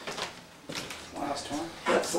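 Quiet room with faint voices in the background, ending in a soft knock.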